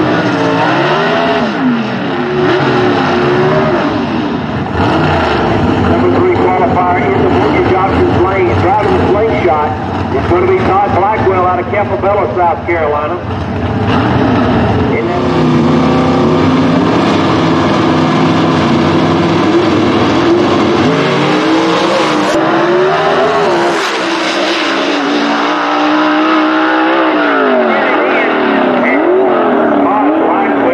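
A/Gas gasser drag-racing cars' engines revving on the strip. The pitch rises and falls in sweeps in the first half, holds steady and high for several seconds past the middle, then sweeps up and down again near the end as the cars run through their gears.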